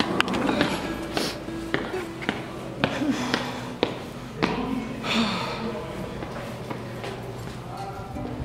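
Footsteps on a hard floor at a walking pace, about two sharp steps a second, with background music and voices underneath.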